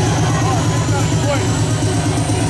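Loud, steady party sound: dance music from a sound system, heavy in the bass, with a crowd's voices mixed in.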